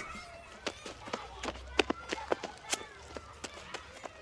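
Running footsteps heard as a scattered series of sharp taps, with faint voices in the background: a playground sound effect in a recorded dialogue.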